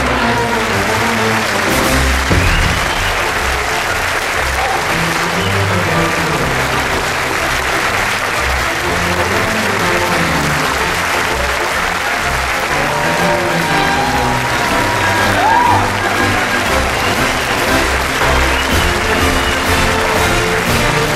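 Theatre audience applauding steadily, with music playing underneath the applause.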